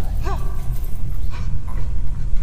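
Industrial noise music, built from processed organic sounds: a dense low rumble throughout, with a brief high cry that rises and falls, about a third of a second in.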